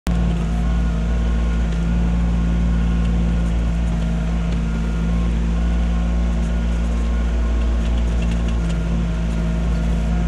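Kubota compact tractor's diesel engine running steadily while it powers the BH77 backhoe digging, with a few faint clicks over the engine hum.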